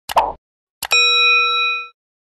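Sound effects: a double mouse click and a pop, then another double click and a bell ding that rings for about a second before fading.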